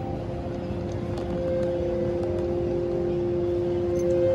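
Busy street traffic noise with two long held notes over it, a lower one joined by a higher one about a second in: the soft opening chords of a backing track starting a song.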